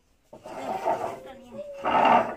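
A person's rough, growl-like voice, starting a moment in and swelling to its loudest near the end.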